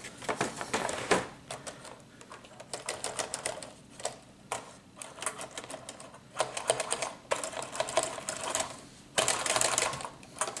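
Clear plastic packaging tray crackling and clicking as it is handled, in quick irregular runs of sharp clicks, with the densest burst near the end.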